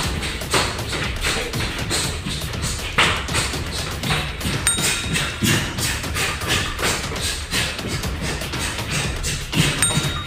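Background music with a steady beat, over repeated thuds and taps of barefoot taekwondo round kicks landing and feet moving on the floor during sparring drills.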